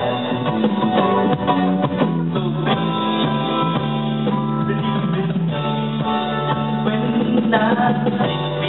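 A live band playing a song on acoustic and electric guitars.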